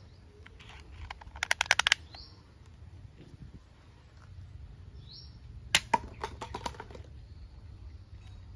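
Blue plastic toy pistol firing a soft foam-tipped dart: a single sharp snap, followed by a light clatter of paper cups being knocked down. A quick burst of rattling clicks comes earlier.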